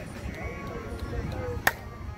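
Softball bat hitting a pitched ball: a single sharp crack about one and a half seconds in, over the chatter of players and spectators.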